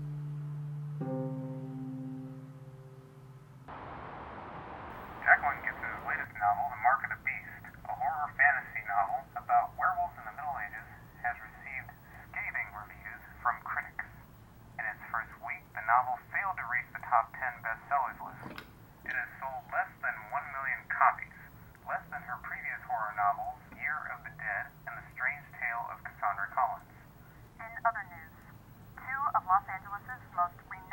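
A voice speaking over a telephone line: thin, narrow-band speech that runs on with short pauses, starting after a brief burst of line hiss about four seconds in. It is preceded by a few sustained music notes that fade away, and there is a single sharp click partway through.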